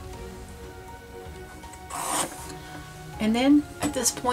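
Soft background music runs throughout. About two seconds in there is a short scratch of a pencil drawn across canvas, and a little after three seconds a brief rising voice sound.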